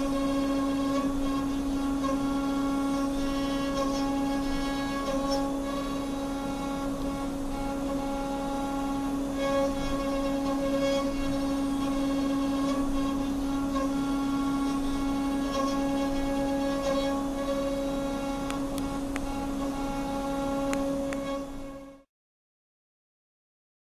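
CNC milling machine spindle running with the cutter milling an aluminium mould block: a steady mechanical whine holding one pitch with its overtones, with a few light clicks.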